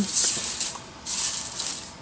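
Bundles of handmade artificial flower sprays on wire stems rustling as hands gather and shuffle them together, in two short bouts of crisp rustling.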